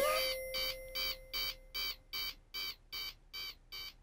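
Electronic beeping in a steady rhythm, about two and a half short beeps a second, growing fainter toward the end, over a held tone that fades out in the first half.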